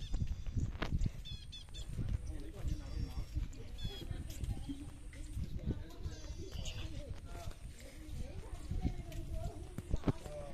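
Low, uneven rumble on a handheld phone microphone carried outdoors, with faint high chirps and faint distant voices in the background.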